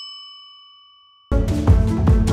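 A single bell-like ding sound effect ringing and fading away. A little over a second in, electronic background music with a beat cuts in.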